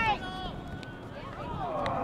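Voices shouting across an outdoor soccer field during a youth match: a loud call breaks off at the start and another rises and falls near the end, with a few short sharp clicks in between.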